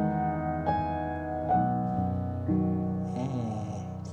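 Sampled upright piano (E Instruments' Pure Upright app in its soft 'intimate' setting) playing slow, quiet chords, with a new chord or note struck about every second and left to ring. Near the end a short soft hiss and a brief hum are heard under the fading chord.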